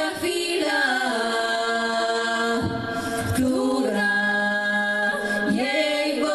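Women's vocal quartet singing a cappella in close harmony, holding long notes together and moving to new chords about a second in, again around four seconds in, and near the end.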